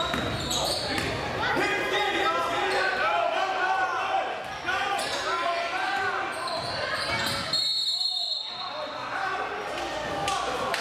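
Basketball game sounds: the ball bouncing on the hardwood court, sneakers squeaking, and players and spectators calling out, all echoing in a large gym.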